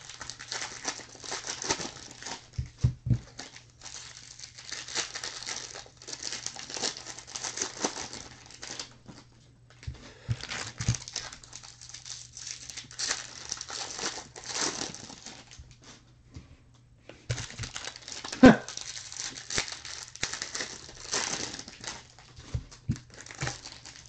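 Foil wrapper of a Bowman baseball card jumbo pack crinkling as hands tear it open and handle it, in bursts with short pauses. A sharp click comes about eighteen seconds in, over a steady low hum.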